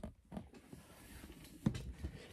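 Handling noise of a camera being picked up and set back in place: a few faint knocks and rustles, the most distinct one near the end.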